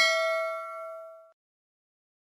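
Bell-like 'ding' sound effect for a notification bell being clicked, a bright chime of several ringing pitches that fades away over about a second.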